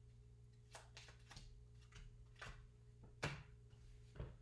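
Near silence with a few soft clicks and rustles of playing cards being drawn and sorted in the hands, the sharpest a little past three seconds in, over a faint steady low hum.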